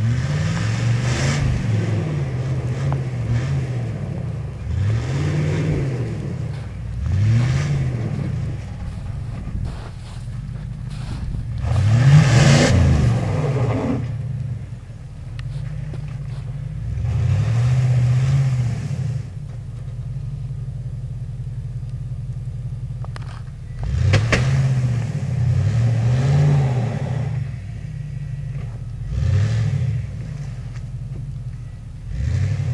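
Pickup truck engine revving up and falling back over and over, about a dozen times, the loudest about twelve seconds in, as the wheels spin and churn through deep snow. Each rev brings a rush of tyre and snow spray noise.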